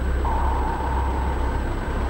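Deep, steady underwater rumble of a documentary sound bed, with a single thin held tone that starts just after the beginning, sinks slightly and stops shortly before the end.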